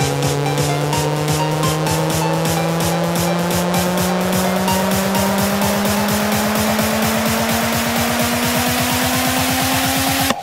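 Electro house build-up: a synth tone rising slowly and steadily in pitch over a fast, even roll of drum hits.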